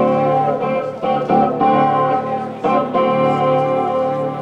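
Amplified Chapman Stick played live: ringing, sustained chord-like notes, with new notes struck every second or so.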